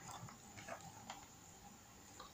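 Near silence: room tone with a couple of faint small clicks.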